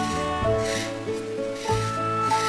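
Marker tip rubbing on paper as a brown area is coloured in, two strokes about a second apart, over background music with held notes and a steady bass.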